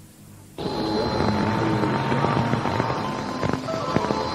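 Radio channel static: after half a second of faint hiss, a louder crackling hiss opens up carrying a steady high whistle and a fainter lower tone, with a few clicks near the end.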